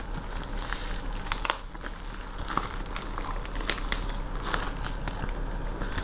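Plastic wrapping and the clear plastic label pouch on a cardboard parcel crinkling and rustling under the hands, in irregular small clicks and crackles. A steady low hum runs underneath.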